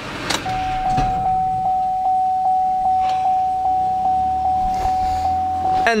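Pickup truck's dashboard warning chime sounding a steady run of pings, about two and a half a second, with the Duramax diesel just switched off: the alert for a key left in the ignition. A thump about a second in.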